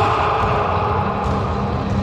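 A wallyball struck by a player's forearms near the start, ringing off the walls of the enclosed court, over a steady low drone.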